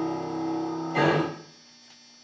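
Piano holding a chord, then a final chord struck about a second in that dies away within half a second, closing the piece.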